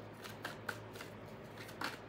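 A deck of oracle cards shuffled by hand: soft, irregular flicks and riffles of the cards, a little louder near the end.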